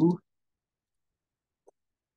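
A spoken word ending at the start, then near silence broken by one faint, short click of a computer mouse button near the end.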